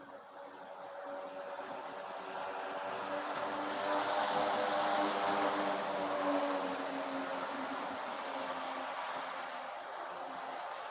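A passing engine, a pitched hum with a hiss over it, that swells to a peak about five seconds in and then slowly fades.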